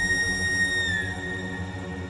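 Background music score: a long held high note over a low drone, the high note bending slightly down about a second in.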